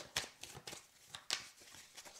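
A deck of tarot cards being shuffled by hand, the cards passing from one hand to the other with about half a dozen soft, short clicks and taps.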